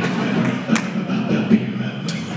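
Beatboxing into a handheld microphone: deep kick-drum thumps about every 0.8 seconds, one with a sharp snare-like crack, over a steady low hummed bass.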